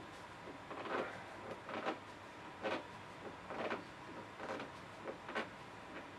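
Rag-wrapped hand twisting the threaded knob off a John Deere 1025R loader joystick by hand. The cloth rubs on the knob in a series of short scraping strokes, about one a second, one stroke per twist.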